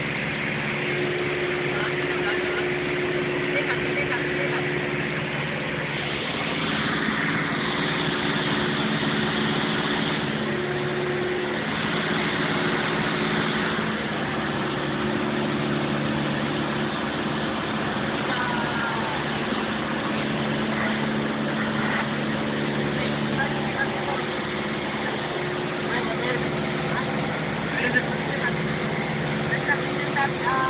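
Cabin noise of a Cessna 172 in low-level flight: the piston engine and propeller drone steadily, with a few slowly shifting tones in the drone.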